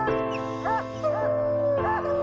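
Hunting hounds baying, short rising-and-falling calls coming about twice a second, over background music with long held notes.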